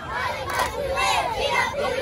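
A group of young girls shouting a cheer together, many high voices overlapping.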